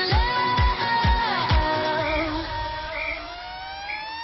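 Electro latino dance music from a DJ megamix: a steady four-on-the-floor kick drum with a held synth or vocal note, then the beat drops out about a second and a half in and a long rising sweep climbs toward the next section.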